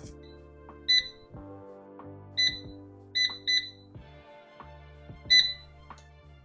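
PowerXL air fryer's touch control panel beeping as its settings are keyed in: six short, high beeps at uneven intervals, over soft background music.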